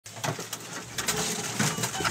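Chickens in a poultry shed flapping their wings in a flurry, with low calls; the flapping gets louder about halfway through.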